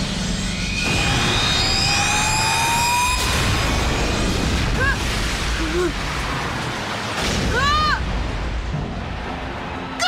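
Cartoon energy-attack sound effects: rising swooshes, then a sustained blast as a glowing shield breaks apart, over dramatic background music, with two short shouts of effort.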